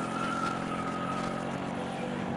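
Street traffic with a vehicle engine running steadily, and a held high tone that fades out in the first second and a half.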